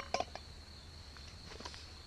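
A small metal cook pot clinks a few times as it is set back down on the camp stove, followed by faint handling of a foil food pouch. A steady faint high-pitched tone runs underneath.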